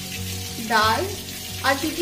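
Food frying in oil in a pan on a gas stove, a steady sizzle, with a voice heard twice over it.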